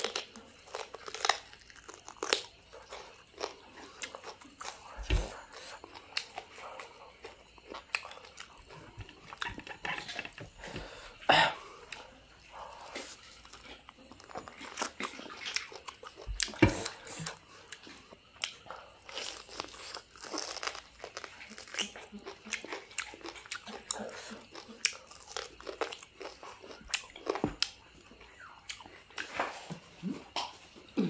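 Close-miked eating of boiled beef on the bone: chewing, with irregular sharp bites and crunches. The loudest come around 11 and 16 seconds in.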